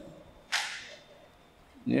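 A single short breathy hiss about half a second in, fading quickly: a sharp breath taken close to the microphone between phrases.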